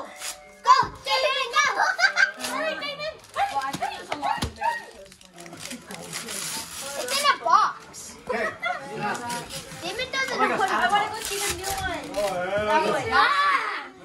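Children and adults talking and exclaiming over one another, with two stretches of paper tearing, about six seconds in and again near eleven seconds, as a wrapped present is opened.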